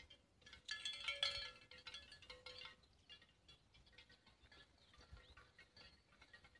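Cowbell clanking: a burst of ringing metallic strikes starting about a second in and lasting about two seconds, then only faint, scattered clinks.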